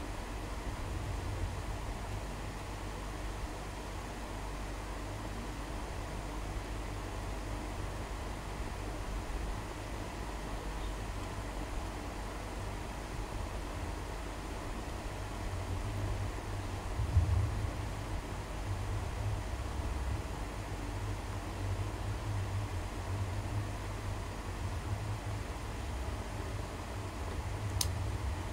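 Steady background room noise: a low rumble with an even hiss over it, swelling briefly about seventeen seconds in.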